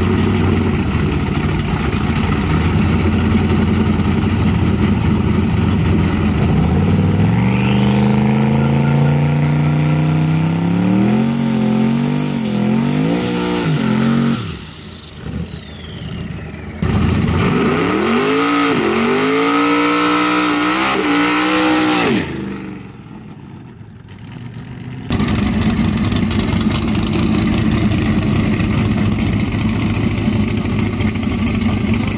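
Street-race cars' engines idling loudly, then a hard launch with the engine pitch climbing through several gear shifts. A second run of rising engine pitch and shifts follows, with abrupt cuts between them, and loud idling returns near the end.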